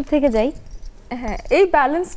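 A woman's voice speaking in two short stretches, with a pause of about half a second in between.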